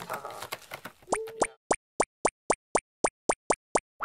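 For about a second, a cat's claws scratch on a corrugated-cardboard scratcher. Then comes a quick, even run of cartoon plopping sound effects, about four a second, each one short and sharp.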